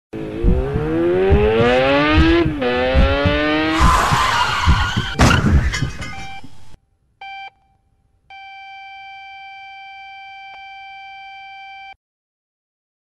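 Motorcycle engine revving up hard, dropping in pitch at a gear change about two and a half seconds in and climbing again. It ends in a skid and a crash impact about five seconds in. After a second of silence comes a short electronic beep, then a long unbroken beep like a heart monitor flatlining.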